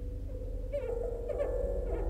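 Improvised guitar-and-bass trio music: pitched string notes swooping up and down in short, meow-like glides over a sustained low bass.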